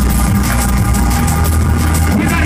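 Drum and bass played loud over a club sound system, with a deep held bass note under fast, even hi-hat strokes.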